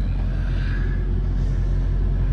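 Diesel truck engine idling: a steady low rumble with an even throb.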